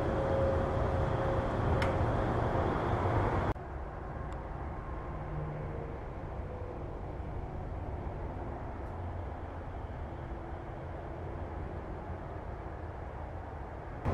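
Steady low background noise with no distinct event in it, stepping down abruptly to a quieter level about three and a half seconds in. There is one faint click near two seconds.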